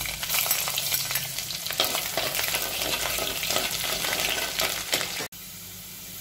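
Sliced rambutan flesh frying in hot oil in a clay pot: loud sizzling full of sharp crackles as the slices go in. About five seconds in it cuts off abruptly, leaving a quieter, steady sizzle.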